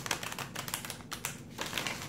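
A deck of tarot cards being handled and shuffled, a dense run of quick papery clicks.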